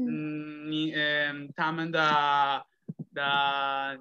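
A person's voice drawing out long, level-pitched syllables in a chant-like way, in three stretches with short breaks between them.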